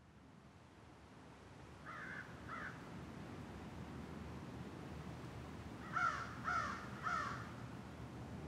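A crow cawing: two caws about two seconds in, then three louder caws about half a second apart near the end, over a faint steady outdoor ambience that slowly fades in.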